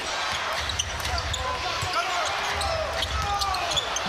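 Basketball being dribbled on a hardwood arena court, low repeated thuds under a steady crowd murmur.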